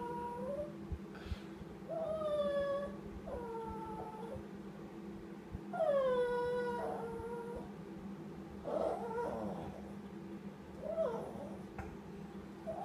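Small dog whining in about six drawn-out, high whines that fall in pitch, the longest about six seconds in. He is fretting over his ball, lost out of reach under the furniture.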